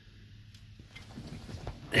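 Quiet room with faint handling noise and a couple of light clicks during a pause in talk.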